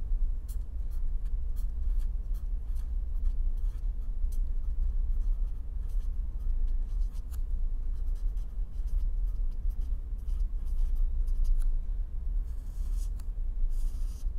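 Pen writing on paper: a run of short, light scratching strokes with a longer stroke near the end as the heading is underlined, over a steady low hum.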